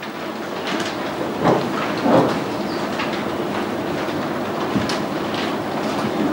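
Steady rustling of many book pages being turned, with scattered clicks and knocks of handling, as a roomful of people look for a page.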